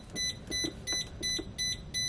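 Electronic warning beeper on a parked school bus, sounding a quick, even run of high pitched beeps, about three a second.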